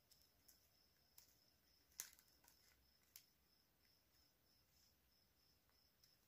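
Near silence broken by a few faint clicks of scissors snipping stiff plastic craft wire, the clearest about two seconds in. A faint high pulsing chirp repeats a few times a second underneath.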